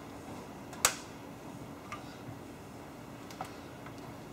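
One sharp click about a second in, then a few fainter ticks, as a poly-groove belt is worked onto an oil-free air compressor's flywheel, the flywheel turned by hand with a screwdriver held under the belt.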